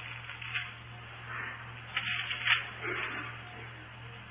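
Background noise of an old sermon recording in a pause between words: a steady low hum with faint hiss and a few soft, indistinct sounds.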